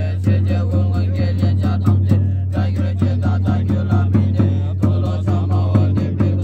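Group of Tibetan Buddhist monks chanting a liturgy in unison in low, steady voices. A large Tibetan frame drum (nga) on a stand is struck at a quick, even beat beneath the chant.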